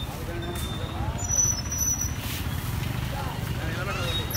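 Street background: a steady low rumble of traffic with faint voices of people talking.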